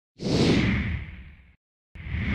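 Whoosh sound effect of an animated logo intro: one loud whoosh that fades away over about a second and a half, a short gap, then a second whoosh starting right at the end.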